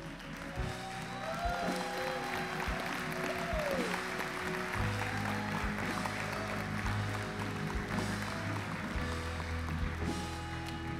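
Congregation applauding and cheering, with a few rising-and-falling whoops in the first few seconds, over a live church band playing softly; a deep bass note comes in about halfway.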